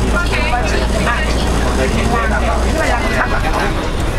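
Steady low drone of a vehicle engine and road noise heard from inside the cabin, under people talking in Vietnamese. The deepest part of the drone drops away about three seconds in.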